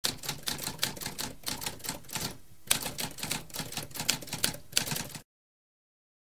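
Typewriter keys struck in rapid succession, a quick run of sharp clicks with a short pause about halfway through, stopping abruptly a little after five seconds in.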